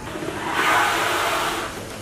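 A rushing noise with no clear pitch that swells in the first half second, holds, and eases off near the end.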